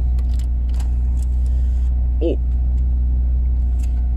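VW Lupo 1.4 16V petrol engine idling steadily, heard from inside the cabin as a constant low rumble; it is running smoothly. In the first two seconds a few clicks and a short rattle come from the dashboard CD player as its button is pressed and the disc ejects.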